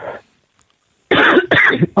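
Talk stops and there is a short gap of near silence, then about a second in a harsh, noisy vocal burst from a person, a cough-like sound lasting under a second.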